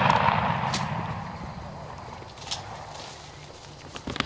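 Rolling echo of a shotgun blast fading away over about two seconds, followed by a couple of faint clicks.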